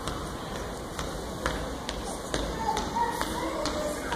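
A child's footsteps on a stage floor: a row of light taps and thuds, about two a second, starting about a second in.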